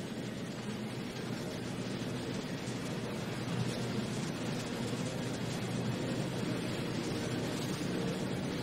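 A steady rushing noise with a faint low hum underneath, holding even throughout.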